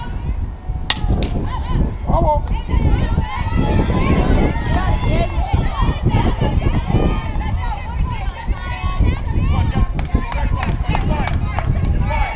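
Overlapping high-pitched voices of players chattering and calling out across a softball field, with steady wind rumble on the microphone. Two sharp snaps come close together about a second in.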